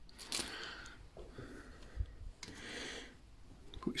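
Faint handling sounds of a hand picking up a screw: light rustles and a soft knock about halfway through.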